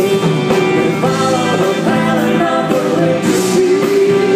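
A live pop-rock band playing: drums, electric guitars and keyboards, with a woman singing.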